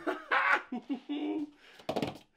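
A man laughing breathlessly with short strained exclamations while handling something heavy.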